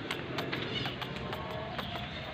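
A cat's low, drawn-out yowl, the caterwaul of a cat in the mating season, starting about half a second in and held to the end, faint under sharp clicks that come about twice a second.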